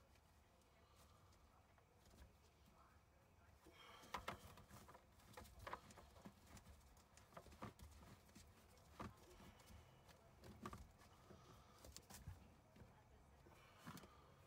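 Near silence with faint scattered clicks and knocks from about four seconds in: black plastic drain pipes and slip-joint fittings under a kitchen sink being handled and tightened by hand.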